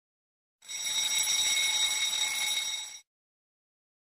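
Alarm-bell sound effect of a countdown timer reaching zero: one steady, high ringing that starts about half a second in, lasts about two and a half seconds and cuts off suddenly.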